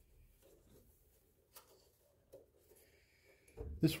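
Faint handling noise from hands working the floppy-drive ribbon cable and its connector inside an open IBM 5150 case: light rustling with a couple of small, sharp plastic clicks about a second and a half and two and a half seconds in.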